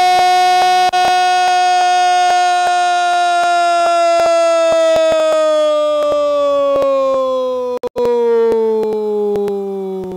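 A commentator's one long, loud held goal cry ('gooool'), called for a goal just scored. The single sustained voice slowly sinks in pitch, with two brief dips, about a second in and near eight seconds.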